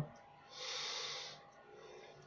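A person breathing out once through the nose, a short rush of air lasting about a second.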